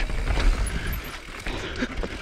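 Evil Wreckoning LB full-suspension mountain bike rolling fast down a leaf-covered dirt singletrack: steady tyre and trail noise with a low rumble and the rattle of the bike, broken by a few sharp clicks.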